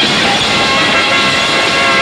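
Bumper cars running around a rink: a steady, dense mechanical noise of the cars moving.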